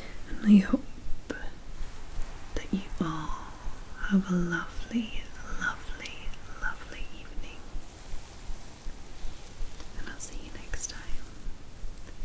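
A woman whispering, with breaks, for the first six seconds or so. A few more short whispered sounds come near the end.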